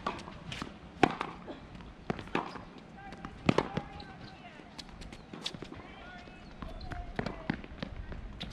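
Tennis ball being hit back and forth with racquets on an outdoor hard court: a string of sharp pops about a second or so apart, the loudest about three and a half seconds in.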